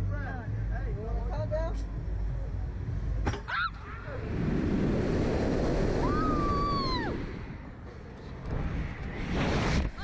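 Air rushing over the on-ride microphone as a Slingshot reverse-bungee capsule is flung upward, after a sharp click about three seconds in. A rider lets out one long call that rises and falls in pitch in the middle of the rush, and the rushing comes back near the end as the capsule swings.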